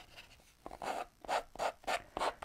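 Emery board sanding the edge of paper glued onto a wooden ornament: about five short strokes, starting about half a second in, wearing the excess paper away to leave a clean edge.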